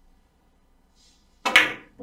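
Carom billiard balls in a three-cushion shot: the cue tip strikes the cue ball and a split second later the cue ball clacks full into the object ball, about one and a half seconds in. A duller, lower knock follows near the end.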